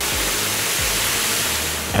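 Sikorsky Firehawk helicopter hovering low over a water tank while it sucks water up its snorkel hose: a loud, steady rush of rotor wash, turbine noise and spray that starts suddenly.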